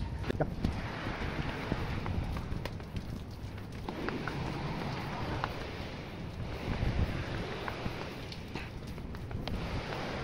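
Footsteps climbing outdoor stairs, with wind rumbling on the phone's microphone.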